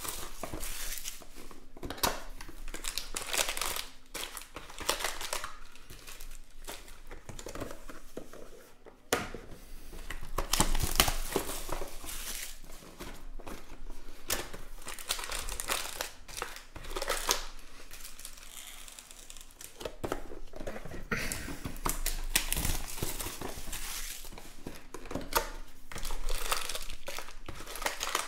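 Plastic shrink-wrap on trading-card boxes crinkling and tearing as it is cut with scissors and pulled off by hand, in irregular bursts of rustling, with cardboard boxes being handled.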